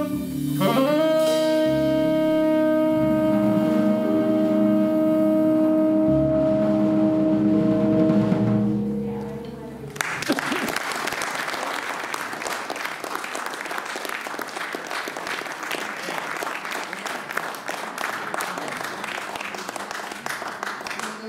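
Jazz quartet holding its final chord: a saxophone sustains one long note over double bass, guitar and drums, fading out about nine seconds in. From about ten seconds on, an audience applauds.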